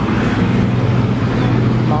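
Steady road traffic noise with a low engine hum.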